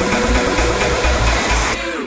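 Electronic dance music with a steady kick-drum beat under a dense synth texture; near the end the beat and the high end drop out as the mix moves into the next track.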